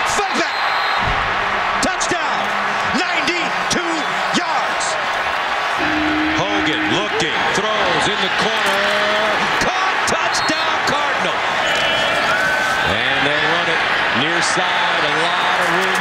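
Football stadium crowd noise from the broadcast field audio: a continuous roar of the crowd with many shouting voices over it, and a few brief held tones.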